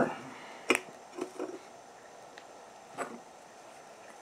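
Light metal clicks and taps from handling a Trangia simmer ring against a brass alcohol burner. There is a sharper click about three quarters of a second in, a few small knocks just after, and another click about three seconds in.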